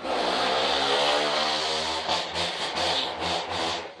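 A motor or engine running steadily with a pitched drone and a hiss. It starts abruptly and dies away just before the end.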